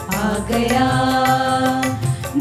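Devotional hymn sung by a small group of voices over a Korg Pa1000 arranger keyboard with a steady beat. The voices slide into one long held note about half a second in.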